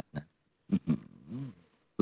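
A man's voice between pauses: the tail of a word, a short syllable, then a drawn-out hum that rises and falls in pitch.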